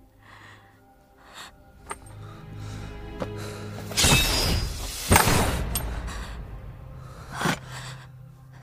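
Film score music with sustained tones, broken about four seconds in by a sudden loud noisy sound effect and a second one a second later, both fading away over the next two seconds.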